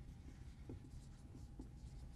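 Faint strokes of a dry-erase marker writing on a whiteboard.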